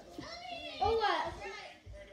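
A young boy's high-pitched voice, excitedly saying something that the recogniser did not catch, loudest about a second in.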